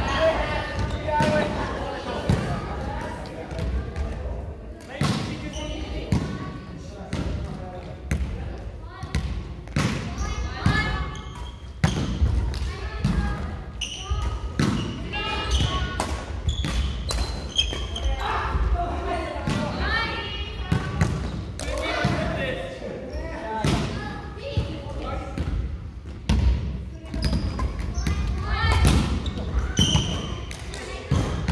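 Badminton doubles rally on a wooden gym floor: sharp racket hits on the shuttlecock at irregular intervals, footfalls thudding on the court, and sneakers squeaking. The sounds ring in a large hall.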